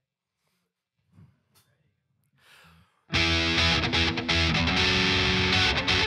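Near silence for about three seconds, then a live rock band (electric guitars, bass, drums and keyboard) comes in loudly all at once, playing the opening of a song.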